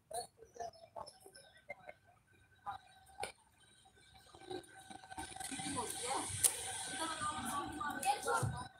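Faint open-air ambience with scattered soft knocks and clicks at first. From about five seconds in, distant voices of players calling out on the field grow louder.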